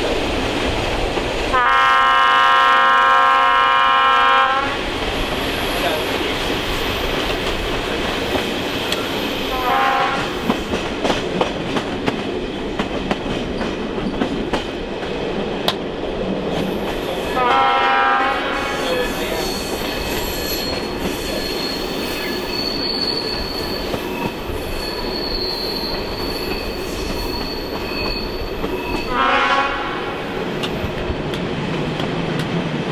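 Horn of a ČKD class 749/751 diesel locomotive hauling the train, heard from a coach: one long chord blast near the start, then short blasts about ten seconds in, near the middle and near the end. Under it the coach rumbles and the wheels clatter over the rail joints, with a thin high wheel squeal in the second half.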